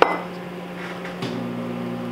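Microwave oven running with a steady hum that grows heavier about a second in. There is a short metal clink at the very start from the aluminium bait mold being handled.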